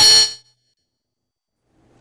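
A single short metallic ding, a news bulletin's transition sound effect at the cut back to the studio, ringing for under half a second.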